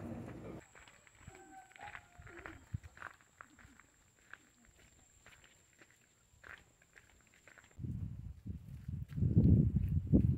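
Quiet footsteps on a bare dirt path with a few faint animal calls in the background, then louder low, irregular thumping and handling noise for the last couple of seconds.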